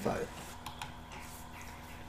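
A few faint computer mouse clicks, about half a second in, over quiet room hum.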